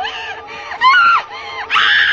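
A high-pitched human voice screaming in a series of cries, each rising and then falling in pitch. The last cry, near the end, is the longest and loudest.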